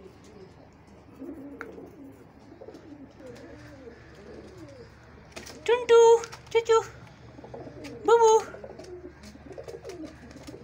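Domestic rock pigeon cooing: low, wavering coos through the first few seconds and again near the end, broken around the middle by three loud, high calls from a person's voice.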